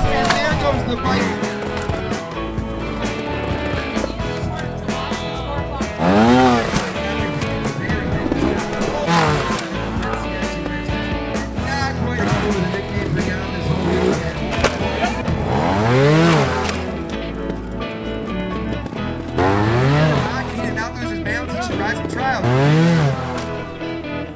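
Trials motorcycle engine revved in short, sharp throttle blips, about five times, each pitch sweeping up and falling back as the bike is popped up onto and over rocks. Background music plays underneath.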